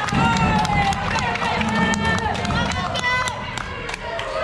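Indoor team game in a sports hall: many overlapping high squeaks of shoes on the court floor, with sharp clicks and knocks of play and running feet.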